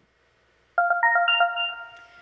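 Short electronic chime jingle: about six quick bell-like notes climbing in pitch, ringing on and fading, starting about three-quarters of a second in. It is the cue for the start of a timed speaking round.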